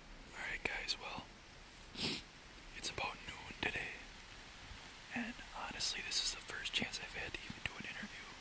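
A man whispering in short breathy phrases, with sharp hissing s-sounds.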